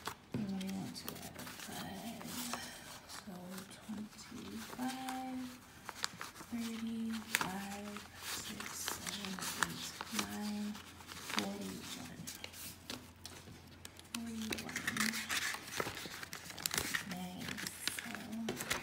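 Paper banknotes rustling and flicking as a stack of bills is counted by hand and slid into a paper envelope. A woman's voice murmurs in short, quiet phrases throughout.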